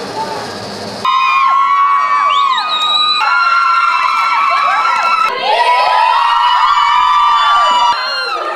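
Several women screaming and shrieking at once, loud and high-pitched. The screaming starts abruptly about a second in, after a moment of crowd noise, with pitches sliding down and a fresh burst of screams about five seconds in.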